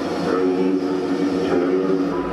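Stadium PA sound effect for the scoreboard's lineup intro: a synthesized build-up of several steady held tones, with a low rumble swelling in near the end.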